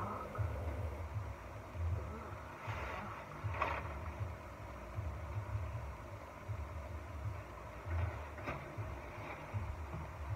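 Faint rustling of a metallic tinsel garland being handled, a few brief crinkles about three to four seconds in, over an uneven low rumble that comes and goes.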